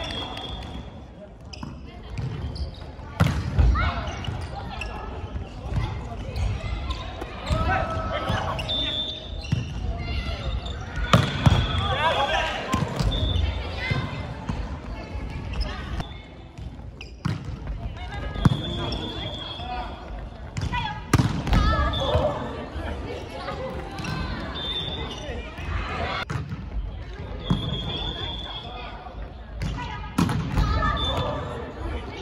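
Volleyball play in a large gymnasium hall: a volleyball is struck by hands and hits the floor with sharp slaps, several times spread through the stretch. Players' shouts and calls come in between.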